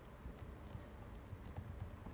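Soft, irregular thuds of dancers' feet and bodies on the stage floor, a few low knocks close together in the second half, with no music playing.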